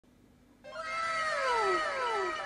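An added sound effect at the start of the video: a pitched call that slides down in pitch, starting about half a second in and repeated by several staggered, fading echoes.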